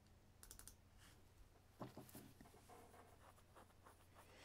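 Near silence: room tone with a few faint computer clicks about half a second in and again around two seconds in.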